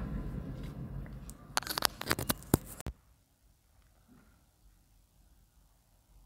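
Rustling and several sharp clicks as a clip-on lavalier microphone is handled and its plug pushed into a phone. The sound then cuts off suddenly just before halfway, leaving near silence as the phone switches over to the external microphone.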